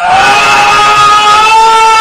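Caracal screaming: one long, loud cry held at a single high pitch that rises slightly at the start.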